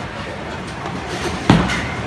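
A bowling ball landing on the wooden lane with a heavy thud about one and a half seconds in, then rolling, over the steady rumble of balls rolling in a bowling alley.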